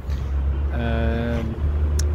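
A man's voice holding one drawn-out hesitation vowel for under a second, about halfway in, over a steady low rumble.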